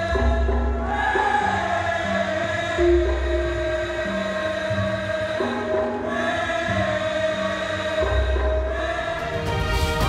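Javanese gamelan music for a bedhaya dance, with a chorus of voices singing long held notes over deep low strokes that come every few seconds. Just before the end it gives way to a theme tune with a fast ticking beat.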